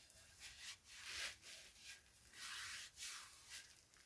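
Hands rubbing oil into a wooden karlakattai (Indian club): palms sliding over the oiled wood in several faint, soft swishing strokes.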